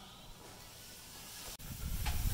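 Faint steady hiss, with an abrupt break about one and a half seconds in, after which a low rumble builds.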